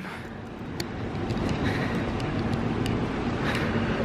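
Train station concourse ambience: a steady low hum under a wash of background noise, with a few faint clicks.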